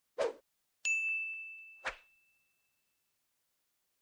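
Intro sound effect: a short noise, then a single bright bell-like ding that rings and fades over about two seconds, with a second short noise about a second after the ding.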